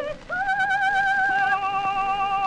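1907 acoustic gramophone recording of a soprano-tenor opera duet. After a brief break, the soprano holds a high sustained note with slow vibrato, and about a second in a second, lower held note joins beneath it.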